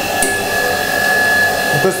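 Automatic public toilet's built-in wash-basin unit running: a steady hiss with a constant high whine.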